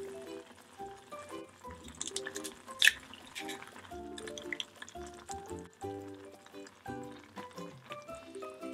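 Upbeat background music over the kitchen sounds, with one sharp crack just before three seconds in, an egg being cracked for the pot, and soft liquid sounds from the simmering ramyun broth.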